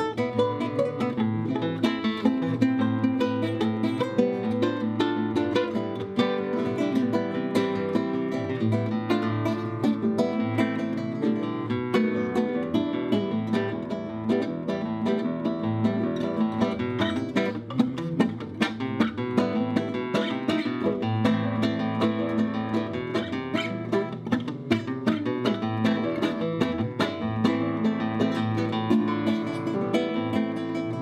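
Solo flamenco guitar: a nylon-string Spanish guitar played with the fingers, a continuous stream of quick plucked notes and chords with sharp attacks.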